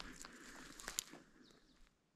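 Footsteps through moss and forest-floor litter, with twigs crackling and a sharper snap about a second in, fading away toward the end.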